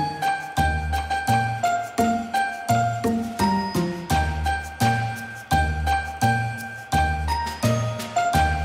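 Background music: a light tune of chiming, bell-like notes over a steady bass beat, about one beat every 0.7 seconds.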